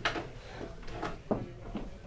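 A few light clicks and knocks as hi-fi components on an equipment rack are handled, the sharpest about a second and a quarter in.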